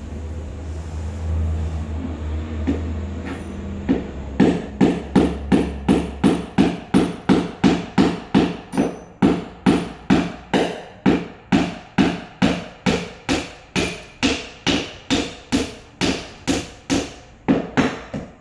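A hammer strikes a concrete floor over and over at an even pace, about two and a half blows a second, starting about four seconds in. Before the blows there is a low hum and a few scattered knocks.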